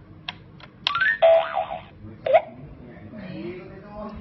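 Winfun crawling-crocodile electronic toy sounding its memory-game effects as its lit buttons are pressed: a few short electronic tones, a quick rising run of tones, then a buzzy tone lasting under a second, and another short tone a little after two seconds in.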